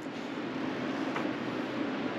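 Steady background hiss of room noise, with one faint click a little past a second in.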